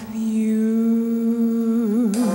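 A female singer holds one long, low sung note, steady at first and breaking into vibrato near the end.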